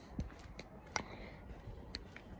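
Quiet outdoor background with a few faint, sharp clicks, roughly a second apart.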